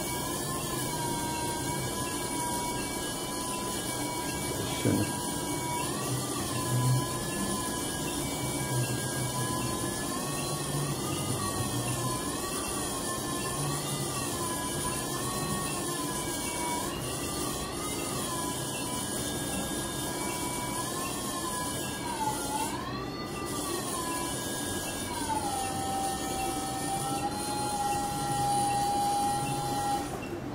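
Phacoemulsification machine's audible tone during aspiration of nucleus pieces, its pitch wavering gently up and down as the vacuum level changes, then settling to a lower steady note a few seconds before the end.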